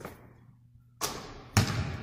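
A basketball hitting hard twice, about a second in and again half a second later, as a shot drops and bounces on the hardwood gym floor. Each thud echoes in the large hall.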